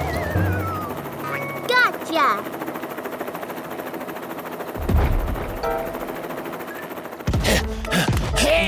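Cartoon soundtrack of background music with comic sound effects. A wobbly falling whistle opens it, quick chirping slides follow about two seconds in, and a rapid fluttering chop runs under the middle part, like a cartoon helicopter's rotor. A thump comes about five seconds in.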